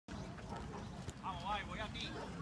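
Voices at a baseball field: a person calls out in the second half, over a low steady background rumble.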